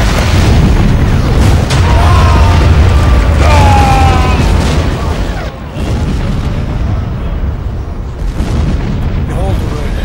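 A heavy naval shell exploding on a coastal artillery battery: a sudden loud blast with a deep rumble that holds for about five seconds and then eases. Men cry out in the middle of it.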